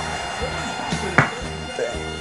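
Background music with sustained tones, and a single sharp click a little over a second in: a checker piece set down on the board as a move is made.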